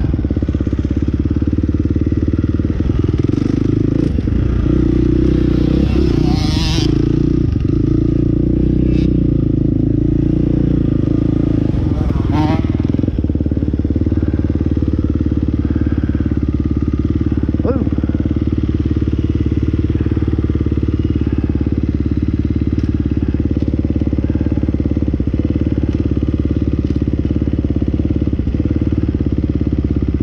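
Husqvarna dirt bike engine running at low speed as the bike rolls over rough grass, then idling steadily from a little under halfway in.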